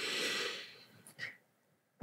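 A woman's deep audible breath, a breathy rush about a second long, followed by a faint short click.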